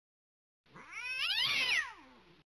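A cartoon cat's single long meow, starting about half a second in, rising and then falling in pitch.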